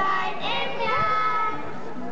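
Children's choir singing, with long held notes and slides between them.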